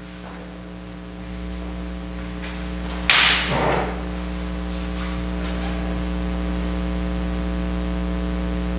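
Electrical mains hum with a buzzy series of overtones from the chapel's microphone and sound system, growing steadily louder. About three seconds in, a brief loud rustling burst comes from someone at the lectern, with a few faint clicks either side of it.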